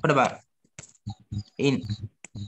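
Brief speech over a video call: a word at the start and another near the end, with a few short clicks in between, like keyboard typing.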